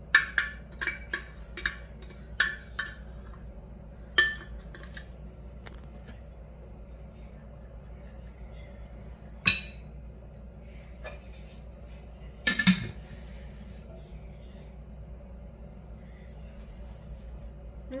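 A plastic measuring scoop knocking and clinking against a mixing bowl as heaping scoops of protein powder are tipped in. There is a quick run of taps in the first few seconds, then single knocks now and then, over a low steady hum.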